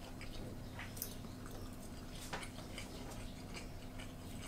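Quiet eating sounds: chewing, with a few light clicks of chopsticks against ceramic bowls, the clearest about a second in and again past two seconds, over a low steady room hum.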